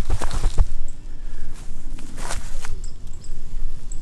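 Footsteps through grass and leafy weeds, with a few irregular rustles and knocks from a hand-held camera swinging with each step.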